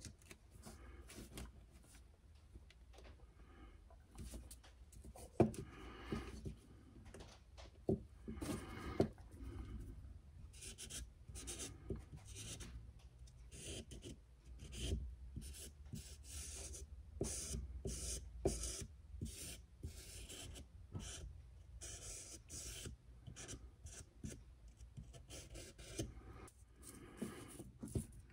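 Wide felt-tip permanent marker rubbed along the edges of a clamped stack of thin wooden planks, a quiet scratchy sound in short irregular strokes as the edges are inked black. A few light knocks from handling the plastic spring clamps and the plank stack are mixed in.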